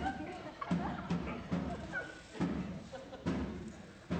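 A battle drum beaten in heavy, uneven strokes, about two a second, each stroke ringing briefly, with voices faintly under it: the war drum of an army drawing near.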